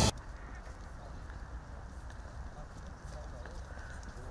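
Quiet outdoor ambience: a steady low rumble with faint footsteps and indistinct murmuring from a group walking on a paved path.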